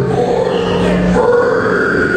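Live noise-band performance: a guttural growled vocal through a distorted PA over a dense droning wall of sound. A steady high tone sets in about halfway through.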